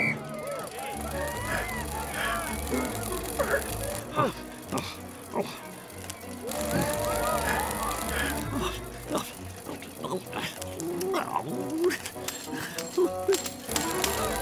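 Cartoon soundtrack: background music with a low bass line, under many short wordless vocal sounds such as grunts, murmurs and exclamations.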